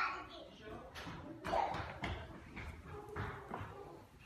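Indistinct voices talking and carrying on, with a few short knocks or taps mixed in.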